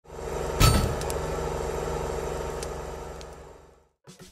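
Intro sound effect: a steady low humming drone that swells in, with a sharp hit about half a second in and a few faint clicks, then fades away near the end.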